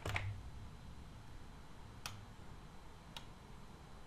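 Computer mouse clicking: a click at the start, then single sharp clicks about two seconds and about three seconds in.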